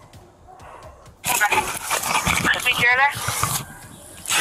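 Body-worn camera microphone scuffing and rubbing against clothing and skin as a wounded man is carried, starting about a second in, with a short strained, wavering cry from a man's voice in the middle of it.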